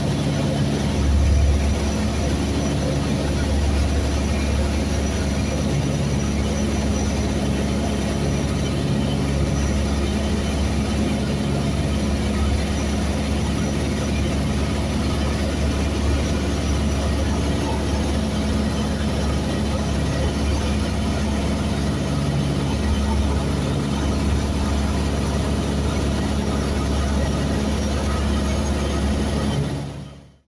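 Cessna 172S's four-cylinder Lycoming engine and propeller droning steadily in cruise flight, heard from inside the cabin, with a low even hum that holds constant until it cuts off abruptly at the very end.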